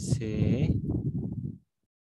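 A man's voice speaking in a drawn-out, sing-song way, which stops about a second and a half in and gives way to complete silence.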